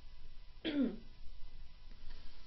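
A person clearing their throat once: a short, throaty sound falling in pitch, a little over half a second in.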